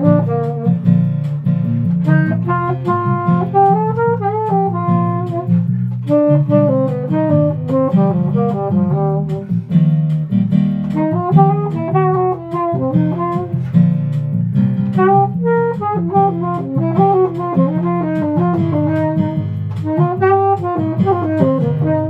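Saxophone playing a melody in arching, sliding phrases over a steady low accompaniment.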